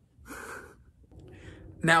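A person's short breathy gasp, with the first word of speech starting near the end.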